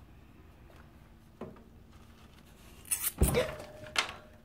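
Mostly quiet, then about three seconds in a sudden loud burst of handling noise as the hand and phone jerk back from the cage, with a short startled voiced sound: the reaction to a pet hamster biting the hand reaching in to pick it up.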